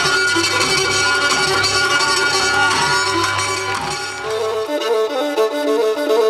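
Pontian folk dance music led by a bowed lyra (kemenche). About four and a half seconds in, the bass drops away and the music changes to a different piece.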